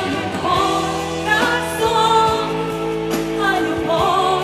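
A woman singing a Russian song into a microphone over instrumental accompaniment, holding long notes with vibrato.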